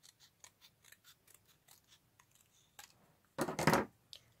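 Scissors snipping thick cardstock in a run of small, quick cuts, then one louder, longer rasp of card near the end.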